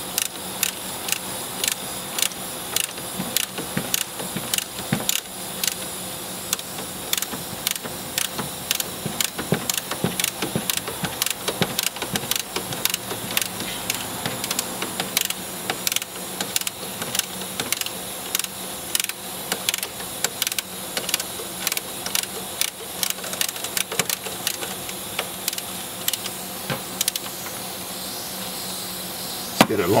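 A 19 mm ratcheting box wrench clicking as it is worked back and forth to tighten a nut, with short sharp clicks coming a few times a second in a steady run.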